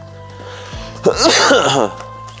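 A man coughing and clearing his throat once, a harsh burst that starts about a second in and lasts under a second, falling in pitch, over soft background music.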